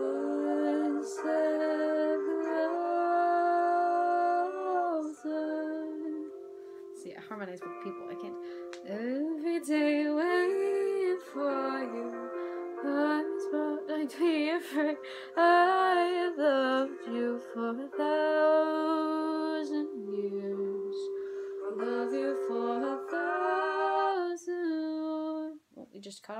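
Singing along to a TikTok duet song: voices carry a melody over a long held note, with a short break about seven seconds in.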